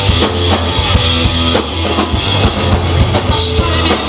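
A live rock band playing loudly, with the drum kit to the fore and electric guitars and bass.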